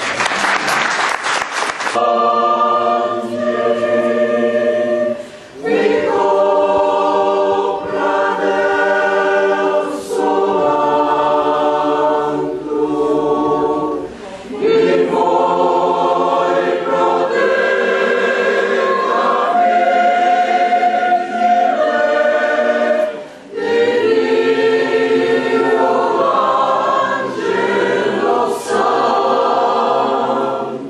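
A choir singing in long held phrases, with brief breaks between phrases. A short burst of applause fills the first two seconds.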